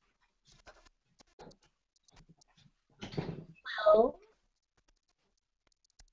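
Mostly quiet with a few faint clicks, then about three seconds in a short breathy sound and a single drawn-out "hello" with a gliding pitch, heard over a video call.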